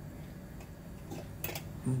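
A quiet pause: a low steady hum with a few faint sharp clicks a little past the middle.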